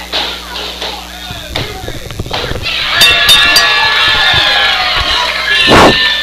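Wrestling ring bell struck three times in quick succession about halfway through, marking the end of the match, its ringing held on under crowd noise and voices. A loud burst of noise comes just before the end.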